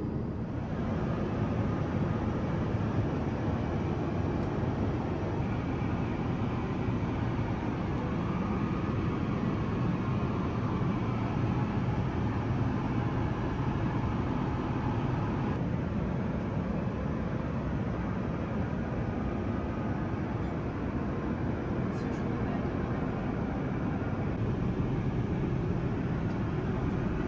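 Steady cabin noise of an Airbus A380 in flight: an even, deep rush of airflow and engines, with a faint click or two near the end.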